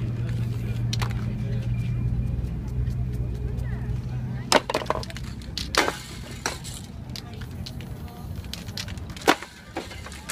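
Street noise with a low steady hum that fades about halfway through, and a few sharp single clicks and knocks over it, the loudest near the end.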